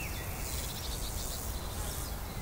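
Insects chirping: a high buzzing that swells and fades in repeated pulses, with a quick rattling trill in the first second. Faint short bird chirps sound now and then.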